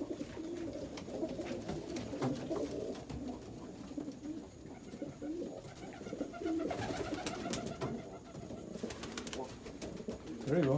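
Several domestic pigeons cooing at once in a small wooden loft, a steady overlapping run of low warbling coos, with a scatter of short sharp clicks near the end.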